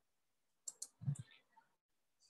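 Two quick faint clicks a little past half a second in, then a brief low sound around one second; otherwise near silence, room tone.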